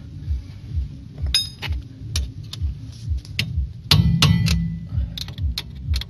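Hammer blows on steel knocking an old bearing race out of a Ford Sierra's front wheel hub: irregular sharp metallic clinks and taps, several ringing on. The loudest cluster comes about four seconds in.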